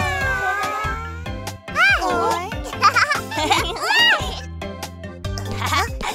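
Children's cartoon background music with animated characters' voices, making several high calls that rise and fall in pitch between about two and four and a half seconds in.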